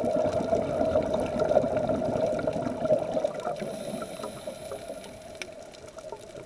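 Underwater scuba sound: a diver's exhaled regulator bubbles gurgling, muffled through the camera housing, fading over the last few seconds, with scattered faint clicks.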